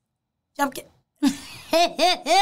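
A woman's voice with its pitch arching up and down, starting about half a second in after dead silence.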